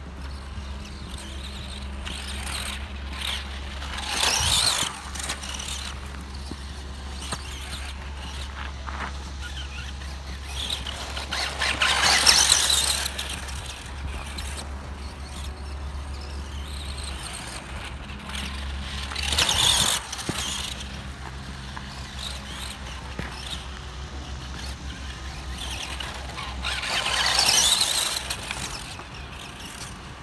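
A Tamiya Super Storm Dragon radio-controlled electric buggy on a modified Hornet-type chassis lapping a dirt track. Its motor, gears and tyres swell up and die away four times as it passes close, about every seven or eight seconds, over a steady low hum.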